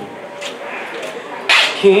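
A pause between sung lines. About a second and a half in, the singer takes a sharp breath in, and his voice starts the next line just before the end.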